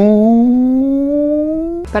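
A comedic reaction sound effect: one long hummed, voice-like note that glides slowly upward in pitch and cuts off abruptly near the end.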